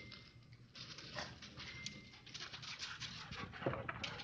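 Husky dogs moving about on snow, with an irregular crackly patter and a few louder knocks near the end.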